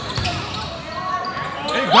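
Spectators' voices echoing in a school gym while a basketball bounces on the hardwood court. A loud shout rises near the end.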